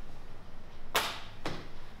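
Two sharp taps about half a second apart, the first a little louder, over a steady low room hum.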